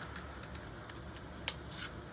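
Quiet room tone with a few faint clicks, the sharpest about a second and a half in, from a plastic headband magnifier being handled.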